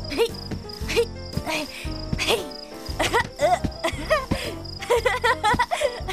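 Crickets chirping at night, a rapid, steady high-pitched chirp that runs on under background music. In the second half, a child's voice calls out in sliding, rising and falling pitch.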